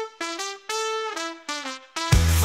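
Music: a solo brass line, trumpet-like, playing about seven short separate notes with one longer held note in the middle, without drums or bass, in an AI-generated ska-emo song.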